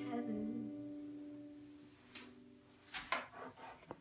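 Final chord of a steel-string acoustic guitar ringing out and fading away over about two seconds as the song ends.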